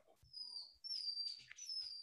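Three high whistled notes, each about half a second long and each falling slightly in pitch.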